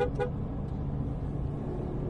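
Ferrari car horn giving two quick beeps right at the start, sounded from the buttons on the steering-wheel spokes. Steady engine and road rumble follows inside the cabin.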